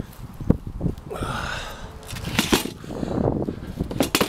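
Handling noise around a hard plastic cooler in a bike cargo trailer: a few knocks and clatters, with a short rushing sound about a second in.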